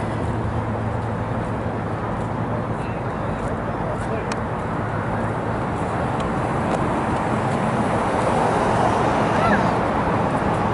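Steady traffic noise mixed with a murmur of indistinct voices, swelling slightly near the end.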